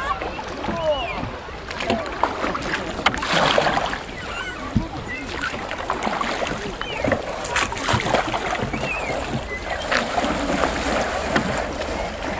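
Wooden oars of a wooden rowboat dipping and splashing in the water, a stroke every couple of seconds, with indistinct voices in the background.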